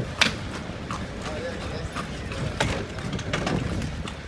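A carriage horse's hooves clip-clopping slowly and unevenly on the road, over a steady low rumble of the moving carriage.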